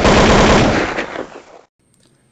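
Logo-intro sound effect: a loud, sudden burst of rapid crackling noise that fades away over about a second and a half, then stops.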